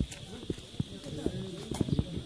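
Men talking in the background over irregular, sharp knocks of olive wood being chopped, several blows in quick succession.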